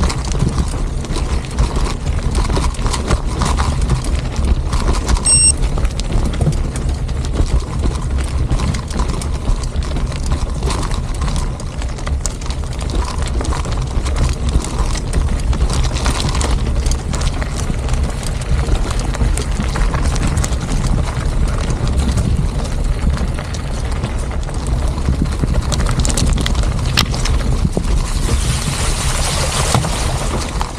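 Mountain bike rolling downhill on a dirt road: tyres crunching over loose gravel with constant small rattles and knocks from the bike, over a steady low rumble of wind on the microphone.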